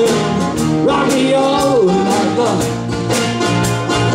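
Live band playing an instrumental passage of a blues number, with saxophone, guitars, bass and drum kit. A lead line slides and bends in pitch over sustained chords and a steady drum and cymbal beat.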